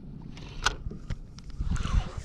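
Spinning rod and reel worked during a fish fight: a handful of irregular sharp clicks and knocks from the reel and handling, the loudest about two-thirds of a second in, over a low rumble.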